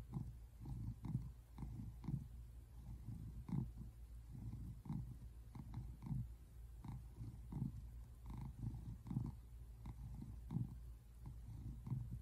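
Tabby cat purring, a low rumble that swells and fades with each breath, about two pulses a second.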